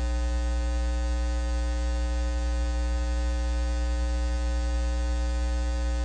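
A steady electrical buzz: a deep mains hum with a stack of thinner, higher tones above it, unchanging throughout.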